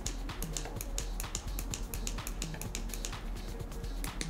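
A rapid run of small plastic clicks: the dimmer button on an LED photo light box's controller being pressed again and again to step the light down, since holding it does nothing. Quiet background music runs underneath.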